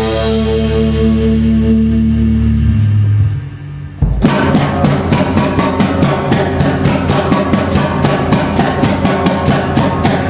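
Live jazz-rock band: held low bass notes ring out for about three seconds, the sound dips briefly, then the drums and band crash back in with a fast, driving beat of about four hits a second.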